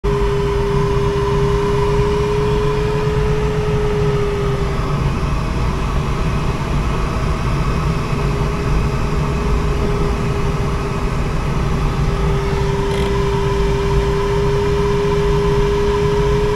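Steady rushing airflow around a sailplane's canopy in flight, heard from inside the cockpit. Over it a steady tone holds, fades out about five seconds in and returns about three seconds later.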